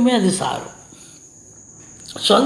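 A man's speaking voice trails off about half a second in, then a pause follows. Through it a faint, steady high-pitched tone runs on unbroken.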